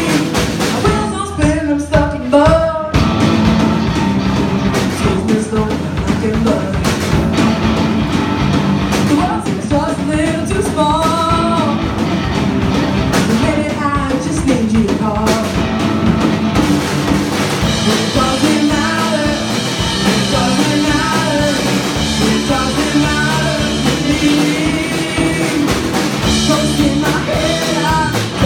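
A live rock band playing a song: lead vocals over electric guitars, bass guitar and a drum kit, loud and continuous.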